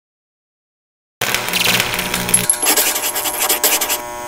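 Complete silence for just over a second, then a loud intro logo sound effect: a dense, rattling burst of rapid strokes, with a low tone under its first part.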